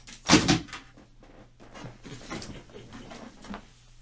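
A loud knock or clatter about half a second in, then quieter rustling and tapping: someone rummaging to fetch a pack of trading-card sleeves.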